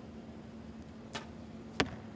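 A compound bow shot: a short click as the string is released about a second in, then a louder, sharper smack a little over half a second later as the arrow strikes the target boss.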